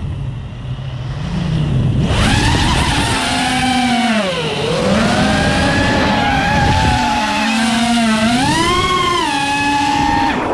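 Drone's electric motors and propellers whining with the throttle. The whine is low and weak for the first two seconds, then climbs back, sinks in pitch around the middle and rises again near the end.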